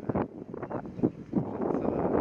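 Wind rushing over the camera microphone as a bicycle rolls on asphalt, with irregular knocks and rattles from the bike.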